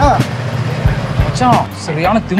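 A man's voice in short bursts, over a background track of low thudding beats and a steady low hum.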